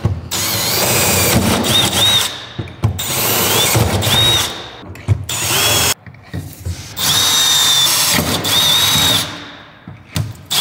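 Cordless drill boring up through the sheet metal of a car's floor tunnel, run in four bursts with short pauses between them. The motor's whine rises and drops as the trigger is squeezed and let go.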